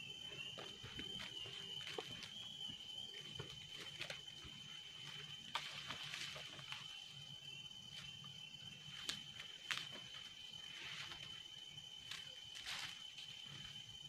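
A faint, steady high-pitched insect drone, with scattered soft clicks and knocks through it.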